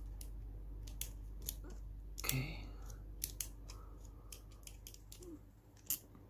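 Small metal clicks and scrapes of a thin steel wrench turning a tiny nut onto a screw, tightening a Mini 4WD roller stopper. A sharper click comes near the end as the wrench is set down.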